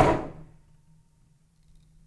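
A Zen teacher's gnarled wooden staff struck down once: a single sharp crack that rings out in the room and dies away within about half a second. It is a teaching strike, meant to be heard in the moment with no thought in between.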